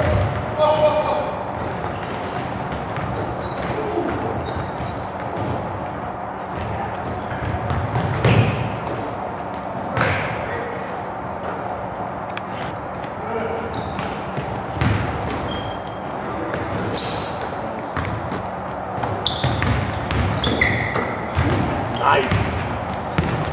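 Basketball game sounds in a gym: the ball bouncing on the hardwood floor, short high sneaker squeaks, and players' indistinct voices and calls, all echoing in the hall.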